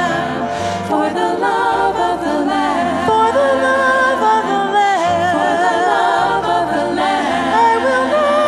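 Women's vocal ensemble singing a gospel song in harmony into handheld microphones, several voices holding and sliding between sustained notes.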